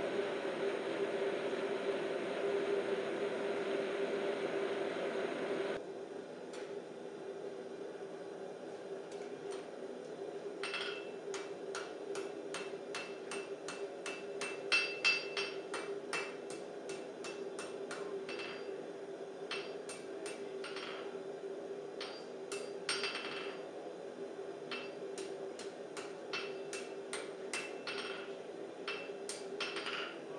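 Blacksmith's hand hammer striking hot steel on an anvil, each blow with a short metallic ring. The hammering starts about ten seconds in as a quick run of blows, then carries on as slower, spaced strikes over a steady hum.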